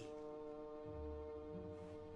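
Quiet suspense film-score music: a single brass-like note held steady, with a faint low rumble beneath.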